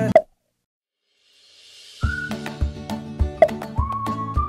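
A short cartoon pop sound effect cuts the music off. After about a second of silence a rising whoosh leads in, and from about halfway upbeat music with a steady drum beat starts.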